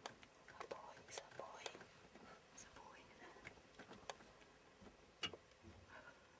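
Faint whispering voices with a scatter of soft clicks and taps, the loudest sharp click about five seconds in.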